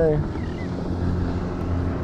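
A steady low engine drone with a faint hum, of a motor running at constant speed.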